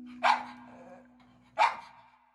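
A dog barks twice, about a second and a half apart, over the fading last held note of a song.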